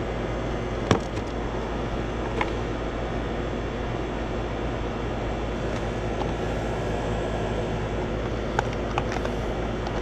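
AC condenser unit running steadily: the compressor hums and the condenser fan, on its new motor, rushes air. A few short sharp clicks come about a second in and twice near the end.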